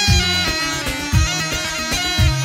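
Amplified Levantine double-pipe reed instrument playing a buzzy, ornamented dabke melody over a steady bass line and a regular drum beat.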